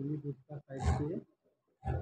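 A man's voice speaking in short bursts with brief silent gaps between them; the words are not made out.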